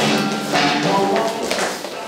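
Slow blues song playing, with dancers' feet tapping and thudding on a wooden floor; the music drops away near the end.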